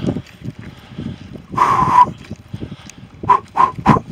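A person's heavy, voiced breathing from hard exertion on a climb: one long strained exhale about halfway through, then three quick panting breaths near the end.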